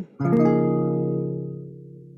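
A C sharp 6/9 chord strummed once on an acoustic guitar, then left to ring and slowly fade. It is the flat-six substitute chord of a 2-5-1 in F, played in place of the two chord.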